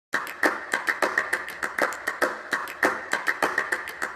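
Sharp hand-clap-like percussive hits, about three to four a second in an uneven rhythm, opening the song's intro before any melody comes in.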